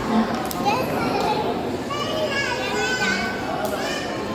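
Young children shouting and squealing at play, with high voices rising and falling, loudest in the second half, over steady background noise of a large indoor hall.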